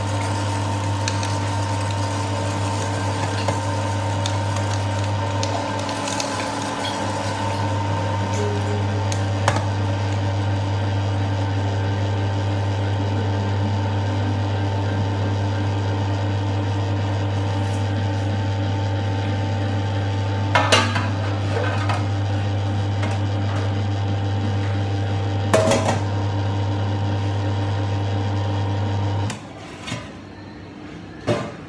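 Commercial electric meat grinder running steadily with a low hum, grinding beef trimmings into mince. There are two short metal clatters partway through, and the motor is switched off about a second before the end.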